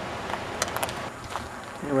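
Steady rushing road noise of a moving car, with a few light clicks about half a second in; a man's voice starts right at the end.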